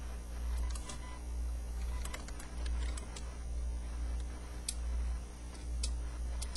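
Scattered light clicks at irregular intervals over a steady low hum that swells and fades about once a second.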